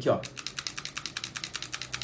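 Rapid, even clicking of a thumb working a pistol's slide-stop lever over and over, in a loop, without closing the locked-open slide.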